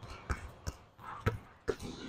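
A basketball being dribbled on a gym court floor: about four short bounces, unevenly spaced, roughly half a second apart.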